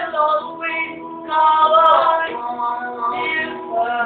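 Music with singing: a voice holds drawn-out, wavering melodic notes, with a short dip in loudness about half a second in. The sound is dull, with no high treble.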